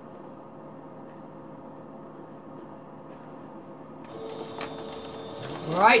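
Singer computerized sewing machine: a faint steady hum, then a steady tone about four seconds in, then near the end the motor speeds up with a quickly rising whine as stitching resumes.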